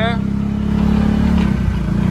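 Utility vehicle's engine running at a steady, low drone while it drives slowly.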